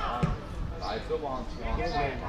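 Voices talking and calling, with one dull thud of a football being kicked about a quarter of a second in.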